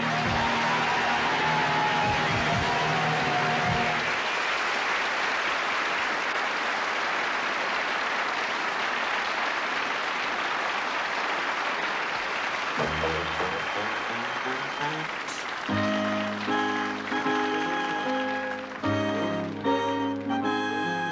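Studio audience applause over the orchestra's last held chord, which dies away about four seconds in. The applause carries on alone and fades, and near the end a dance band strikes up a bouncy introduction to the next song.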